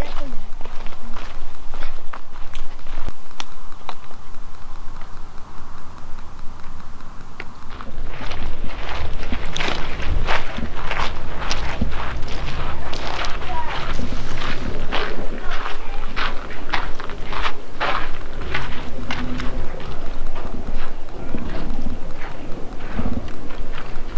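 Footsteps on a dirt and gravel path at walking pace, about two steps a second, over a steady low rumble. The steps become clear about eight seconds in.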